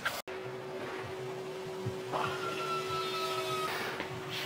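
Quiet background with a steady hum. From about two seconds in, a higher whine joins it for about a second and a half, then stops.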